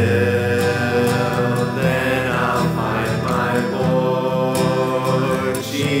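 A carol sung by a single voice over steady instrumental accompaniment, with long held notes that glide up and down.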